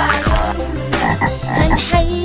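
Cartoon frog croaking sound effect, a rasping croak mixed over the song's backing beat.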